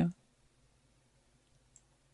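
A man's voice finishes a word right at the start. Then there is quiet room tone, with one faint click of a computer mouse button near the end.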